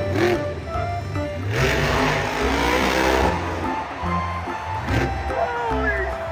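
Monster truck engine running and revving, louder for a couple of seconds from about one and a half seconds in, under background music with a steady low beat.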